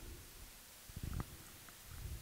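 Faint handling noise on a handheld microphone: a low rumble with a soft thump about a second in, and a couple of faint ticks.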